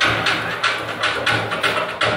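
Percussion music for a traditional dance: a quick, even beat of struck instruments.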